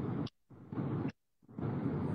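Steady car-cabin noise picked up by a phone on a video call, cutting out to silence twice for a moment.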